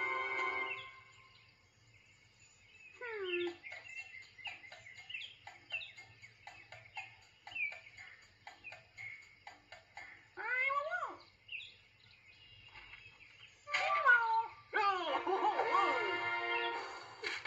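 Cartoon soundtrack: music breaks off in the first second, followed by a string of short high-pitched chirps and squeaky gliding cries, some falling and a cluster rising about ten seconds in. Music comes back about two seconds before the end.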